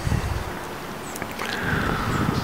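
Wind buffeting an outdoor microphone: an uneven low rumble with a steady hiss over it.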